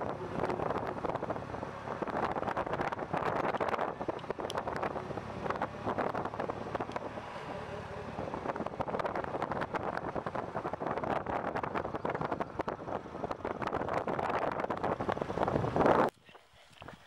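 Polaris Slingshot three-wheeler driving at low speed, its engine and road noise mixed with wind buffeting the microphone in the open cockpit. The sound cuts off suddenly at the very end.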